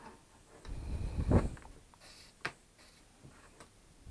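Handling noises as a soldering iron and a reel of solder are picked up at a workbench: a rumbling knock about a second in, then a sharp click and a few lighter ticks.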